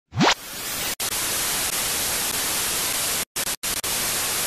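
Television static hiss sound effect, opened by a brief rising electronic sweep and chopped by several abrupt short dropouts near the end, like a glitching TV signal.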